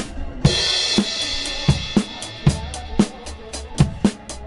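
Acoustic drum kit played along to a recorded backing track. A crash cymbal is struck about half a second in and rings on, fading slowly over regular bass drum and snare hits.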